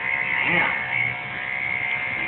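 Electric hair clippers switching on and running with a steady high buzz as they cut a toddler's hair short.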